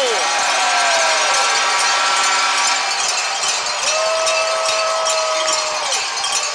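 An ice-hockey arena goal horn falls sharply in pitch as it shuts off, right at the start, over ongoing crowd noise. About four seconds in, a steadier, lower horn-like tone sounds for roughly two seconds.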